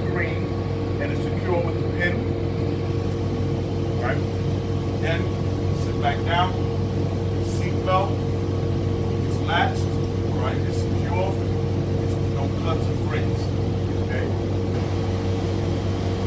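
Steady low hum of an idling city transit bus, with voices talking over it.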